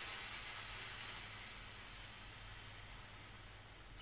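A slow, controlled exhale through pursed lips: a soft, steady hiss of breath that fades gradually over about four seconds. It shows breath control, with the air let out slowly rather than all at once.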